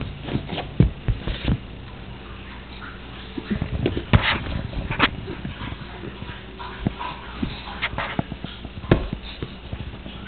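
Scattered soft knocks and clicks of a plastic lattice baby ball being handled and passed back and forth, with a few faint high-pitched sounds in the middle.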